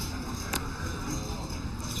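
Steady room noise of a busy card room, with a faint murmur of distant voices and no distinct event.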